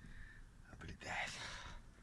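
A man's brief, faint whisper about a second in, breathy and without a clear voice, after a few small clicks.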